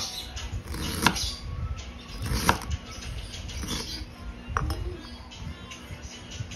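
Kitchen knife cutting fresh ginger on a cutting board: soft cutting and scraping, with a few sharp knocks of the blade on the board, the loudest about a second in and two and a half seconds in.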